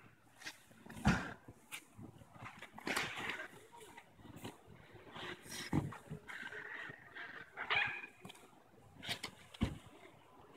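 Two grapplers rolling on tatami mats: bodies thudding and sliding on the mats under heavy breathing and grunting. A few louder thumps come about a second in, near six seconds and near the end.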